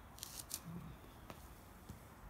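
A few faint, sharp clicks, several close together early on and single ones later, over a quiet background.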